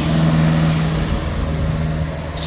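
Engine of a van passing close by: a steady low drone that eases off toward the end.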